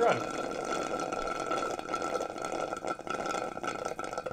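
Continuous slurping through a straw from a plastic cup of iced drink, a steady rasp of air and liquid that keeps on without a break.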